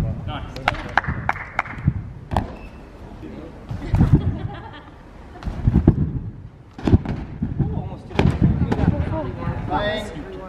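Irregular thuds of people bouncing and landing on a trampoline, with voices talking between them.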